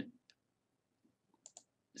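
Near silence with faint computer mouse clicks, a pair about a second and a half in, as a spreadsheet cell is selected.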